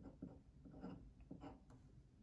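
Pen writing on paper: faint, short scratching strokes, several in quick succession.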